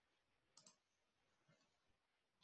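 Near silence with two faint computer clicks close together about half a second in.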